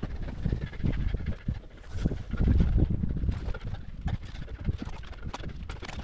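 Close scuffs, rustles and irregular knocks of a rock climber moving on granite: gloved hands and climbing shoes on the rock and a jacket rubbing, heard through a helmet-mounted camera. The noise is loudest about two to three seconds in.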